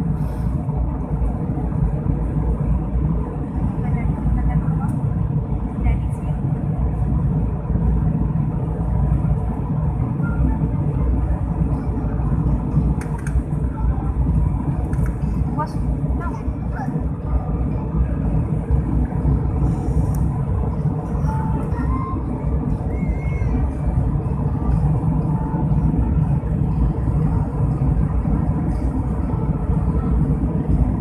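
Steady low roar of a jet airliner's engines and airflow heard inside the passenger cabin during the climb after takeoff, with faint voices of passengers in the background.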